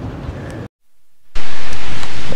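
Wind noise on the microphone: a steady rush that drops out briefly a little after half a second in, then returns much louder.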